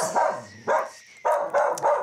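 A dog barking repeatedly: several short barks in quick succession, about half a second apart.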